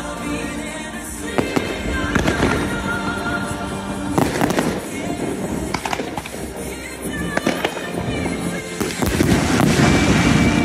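Fireworks going off in a string of sharp bangs and crackles over the show's music, with the loudest, densest volley near the end.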